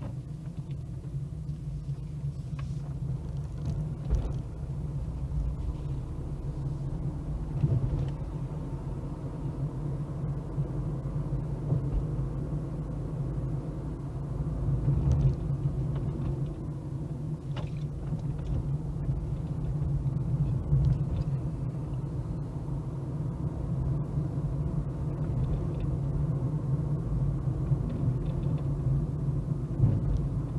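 A car's engine and road noise heard from inside the cabin while driving: a steady low rumble, with a few short knocks or bumps along the way.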